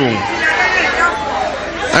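A man's amplified voice trails off, followed by a murmur of many voices talking at once.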